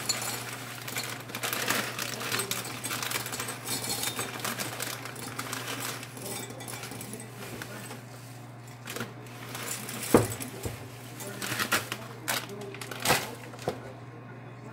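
Dry pretzel sticks poured from a plastic bag into a glass measuring cup: a dense patter of small clicks and rattles with the bag crinkling. From about ten seconds in come a few sharper knocks, the loudest just after ten seconds, as the filled cup is handled.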